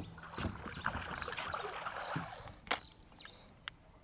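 Water splashing as an arrow-shot fish is hauled through the water on a bowfishing line to the boat, with a few sharp knocks; it dies away near the end.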